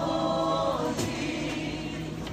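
Live worship music: a singer leads a song over a band, with many voices singing along, holding one sung note through the first second before a sharp hit.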